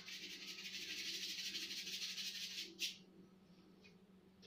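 A paintbrush scrubbing paint onto a stretched canvas: a scratchy, fluttering hiss that lasts about three seconds and stops with a sharp click near the end.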